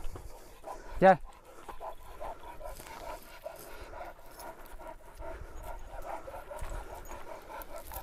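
Dogs panting in quick, short breaths that run on steadily and quietly.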